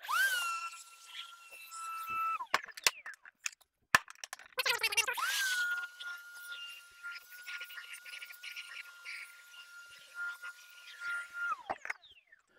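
Shop vac switched on for about two seconds and off, then on again for about seven seconds, its motor whine rising as it spins up and falling as it winds down, with hissing suction over it as the hose sucks up loose debris from the engine. A few clicks come in the gap between the two runs.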